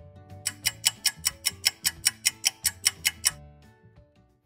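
Clock-ticking sound effect, fast and even at about five ticks a second, over background music; the ticking stops a little after three seconds in.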